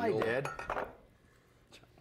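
A spatula scraping and clinking against a cast iron skillet while spreading thick cornbread batter, with a brief ringing in the first second. It then falls quiet, with a faint click near the end.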